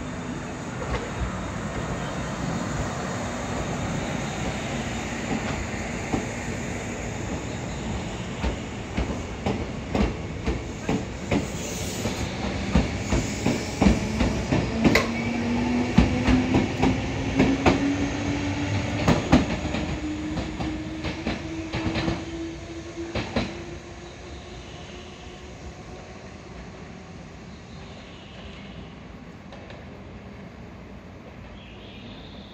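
Kintetsu electric train pulling out of the station and picking up speed. A low motor hum rises slowly in pitch, and the wheels clack over rail joints, the clicks coming faster and thicker through the middle. Once the last car has passed, about three-quarters of the way in, it all drops to a low background noise.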